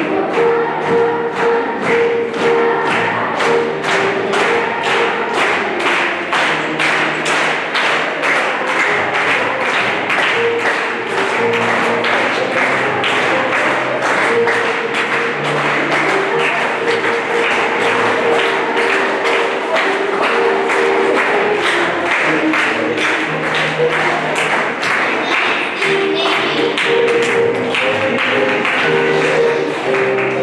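School children's choir singing to accompaniment, with a steady beat of sharp claps running all through.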